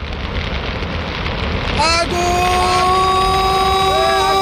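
Fire sound effect, a dense crackling hiss that grows steadily louder. About two seconds in, a long tone slides up and then holds steady over it.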